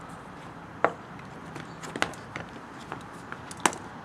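Hand cable cutters snipping through stranded copper wire: a few sharp clicks and snaps, the loudest about a second in, two seconds in and near the end.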